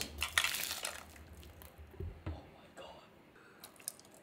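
Boiling water poured from an electric kettle into a glass baking dish of water, splashing most loudly in the first second, then thinning to a faint trickle.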